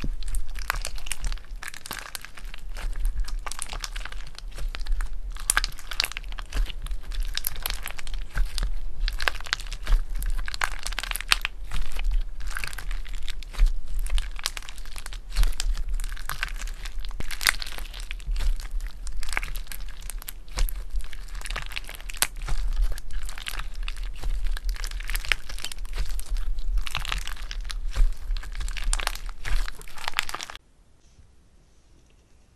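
Clear glitter slime being stretched, folded and squeezed by hand, giving a dense, continuous crackling of many small pops and clicks.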